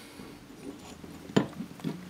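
Faint handling of a sharpening stone against a metal bar, with one sharp click about a second and a half in and a couple of lighter ticks just after.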